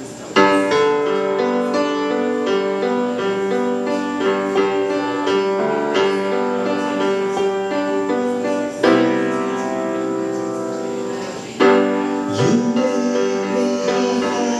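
Solo piano playing the opening of a ballad: chords and melody notes in a steady flow. About two-thirds through, a chord is held and rings down, then a loud new chord is struck near the end.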